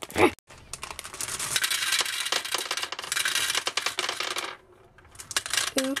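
Gumballs poured from a bag into a clear plastic gumball machine globe: a dense clatter of many small hard balls dropping, lasting about four seconds, then stopping. A short laugh comes at the end.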